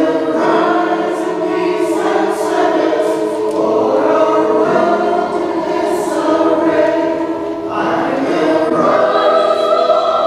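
Mixed-voice church choir singing in harmony, holding long chords; the sound dips briefly just before the end and a new phrase begins.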